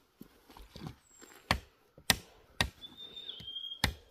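A long stick beating down on the stone-slab trail: four sharp, separate blows, unevenly spaced, starting about a second and a half in.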